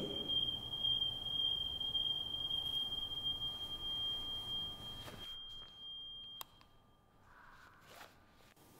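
Small loudspeaker sounding a steady high-pitched 3,200 Hz test tone. It is being swung in a circle at first, so its pitch rises and falls slightly with the Doppler effect, and then it cuts off suddenly about six seconds in.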